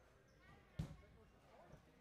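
Faint, distant voices in an ice arena, broken by a single sharp thud a little under a second in.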